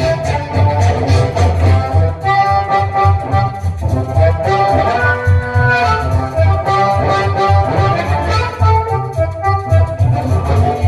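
Amplified harmonica played into a cupped hand-held microphone: held notes and a wavering, bent note about halfway through, over a backing track with a steady pulsing bass beat.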